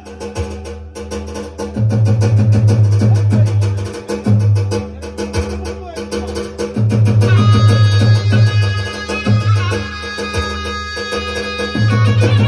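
Instrumental interlude of Turkish folk dance music on an electronic keyboard. Heavy bass-drum beats come in repeated runs, and a held melody line enters about seven seconds in.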